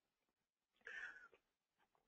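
Near silence, broken about a second in by one faint, brief sound.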